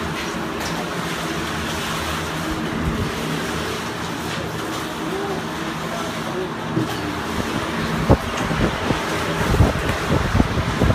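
Steady rushing noise with a low hum under it, with faint distant voices. From about eight seconds in there are several sharp knocks and bumps.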